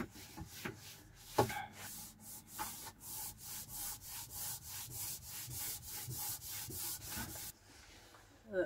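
Cloth rubbing on a wooden cupboard panel in quick, even back-and-forth wiping strokes, about three a second, stopping shortly before the end. A single knock comes about a second and a half in.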